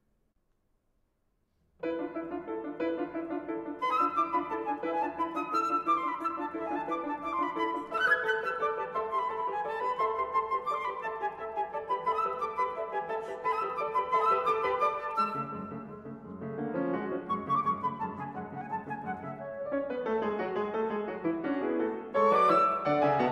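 Concert flute and grand piano playing classical music together. After nearly two seconds of near silence, both come in at once, about two seconds in, and play on.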